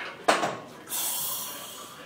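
A man breathing hard while straining through a slow leg-press rep: a short sharp breath about a third of a second in, then a long hissing exhale from about a second in that slowly fades.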